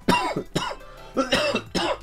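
A man with a cold coughing about four times in quick succession.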